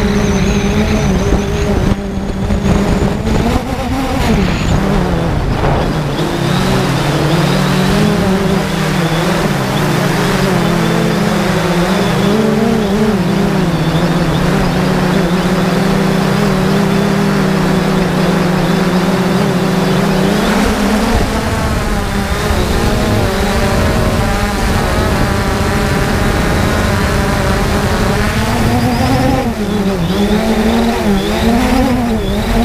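3DR Solo quadcopter's four electric motors and propellers buzzing loudly, heard from the camera on the drone itself. The pitch holds fairly steady at first, then wavers up and down in the last third as the motor speeds change.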